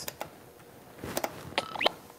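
A few light clicks and a brief rising, scratchy chirp near the end as a record in Serato Scratch Live is nudged back and forth by hand to cue up its first beat.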